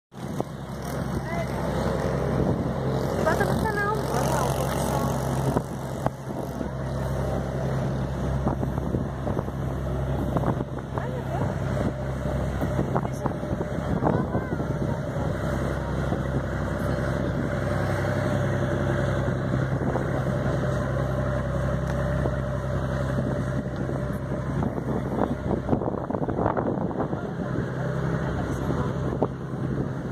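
A steady low engine drone that holds one pitch throughout.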